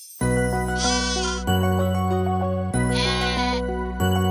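Bouncy children's song music starts just after the beginning, with a sheep's 'baa' bleat sounding twice over it, each one short and wavering.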